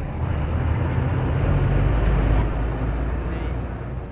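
Steady low rumble of a bus on the move, with engine and road noise heard from on board.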